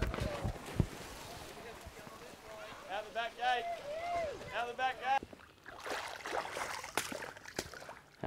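Water splashing and churning as a saltwater crocodile lunges into a pond and swims off. Voices call out faintly between about three and five seconds in.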